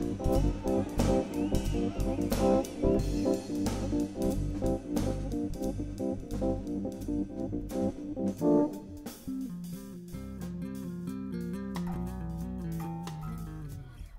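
Live jazz fusion band playing: drums, electric bass and keyboard chords. About nine seconds in, the drums stop and the keyboard and bass carry on more quietly.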